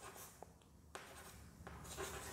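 Chalk writing on a blackboard, faint: soft scratching with a few light taps as a word is written.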